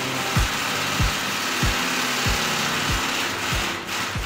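Background music with a steady drum beat, about three beats every two seconds, over a steady whirring that fits a cordless drill-driver running.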